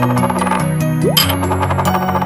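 Cartoon sound effect of a small plate clattering down and spinning to rest like a dropped coin, twice: one rattle dies away about half a second in and another starts just after a second in, each led by a quick rising slide. Light children's music plays underneath.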